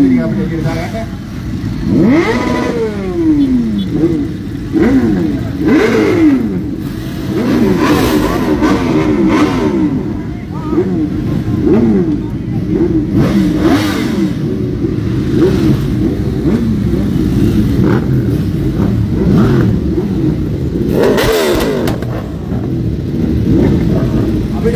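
Several high-capacity sport motorcycles revving over and over, engine notes rising and falling in quick, overlapping blips, with crowd voices underneath.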